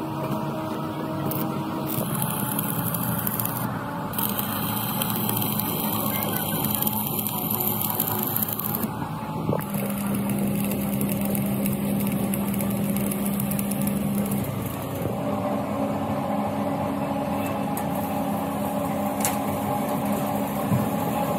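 Stick (arc) welding on a steel frame: the continuous crackle and hiss of the electrode arc, starting and stopping between welds, over a steady low hum.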